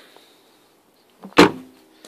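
Trunk lid of a 2004 Volkswagen Jetta slammed shut once, about a second and a half in, with a lighter knock just before it.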